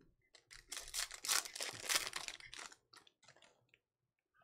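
Foil wrapper of a Bowman University Chrome basketball card pack being torn open and crinkled, a dense crackle lasting about two seconds, followed by a few faint ticks as the cards are handled.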